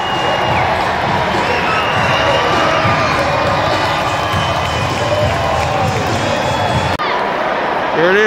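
A large football stadium crowd cheering and shouting, a dense roar of many voices. It changes abruptly about a second before the end.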